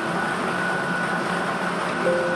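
Lottery ball drawing machine running with a steady whir and a thin high hum, as it mixes the numbered balls and delivers one into its clear capture chamber.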